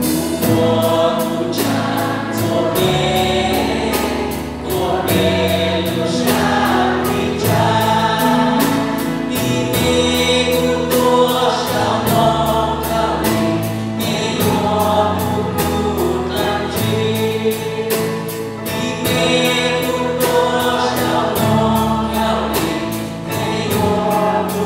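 Live worship band playing a praise song in Hmong: a man singing lead into a microphone over electric and acoustic guitars, bass guitar and drums keeping a steady beat.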